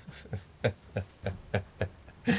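A man laughing quietly to himself: a run of short, breathy chuckles, about three or four a second.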